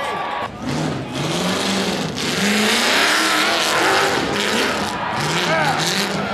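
Rock-bouncer buggy engine revved up and down in quick repeated bursts as it climbs a rock ledge, loudest in the middle, with a crowd's shouting mixed in.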